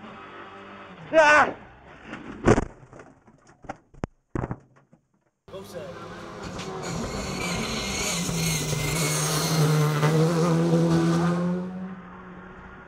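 A rally car at speed on a tarmac stage, approaching: its engine note grows steadily louder over about six seconds, loudest shortly before the end. Earlier, brief sounds from inside a rally car's cabin with a couple of short calls.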